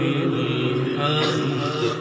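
A man's melodic Qur'an recitation, one long held phrase whose pitch wavers in the middle, sung into a microphone.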